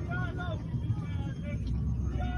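Distant people hollering in short calls, heard faintly over the steady low rumble of a moving car from inside its cabin.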